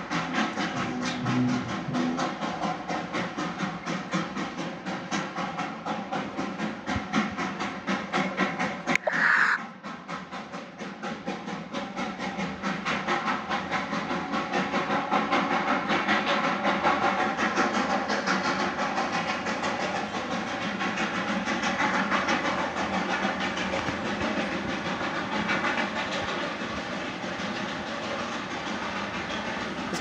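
Darjeeling Himalayan Railway steam locomotive working, its exhaust chuffing in a fast, even beat, with a brief sharper sound about nine seconds in.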